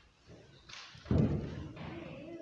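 A single heavy thump at the wooden pulpit, with a short rustle just before it.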